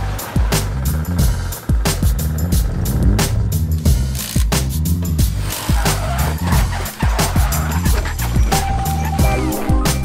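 Background music with a steady beat and bass line, with drifting cars' engines and tyre squeal mixed in underneath.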